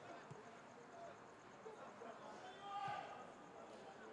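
Faint football match sound: distant voices calling across the pitch, with two dull thuds of the ball being kicked, one just after the start and one about three seconds in.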